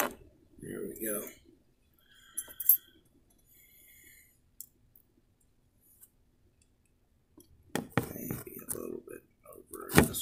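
Clicks, knocks and rustles of a phone being handled and set on a truck's dashboard, with a brief ringing clink about two and a half seconds in. After a quiet stretch, more handling knocks and rustles come near the end.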